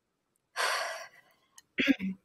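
A woman's audible breath: a sudden breathy rush about half a second in that fades over half a second, then a brief low murmur near the end.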